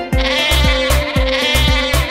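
A goat bleating once, a long wavering call that lasts nearly two seconds, over a children's music track with a steady beat.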